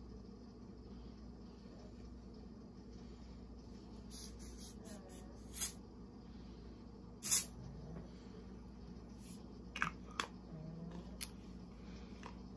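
A person sniffing an air freshener through the nose: about five short sniffs, a second or two apart, over quiet room tone.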